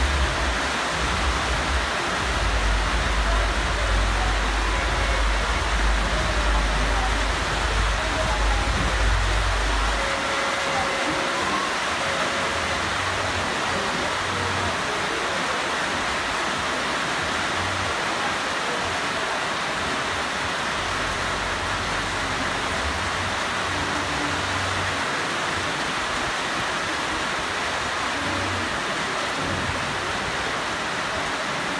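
Heavy rain falling, a steady hiss, with a strong low rumble through roughly the first third.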